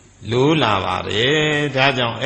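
A Buddhist monk's voice reciting a text from a book in a chanting, sing-song cadence, starting after a brief pause about a quarter of a second in.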